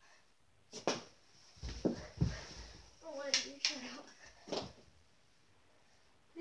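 Kids' knee hockey on carpet: a few sharp clicks of plastic mini hockey sticks striking the ball, dull thumps, and short wordless voice sounds from the players.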